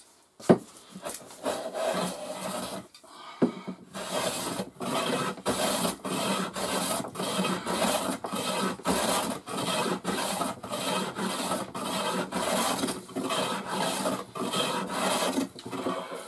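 Metal hand plane taking quick strokes along a wooden board, each pass a rasping shave, about two a second. A sharp knock comes about half a second in, and a smaller one just before the strokes begin.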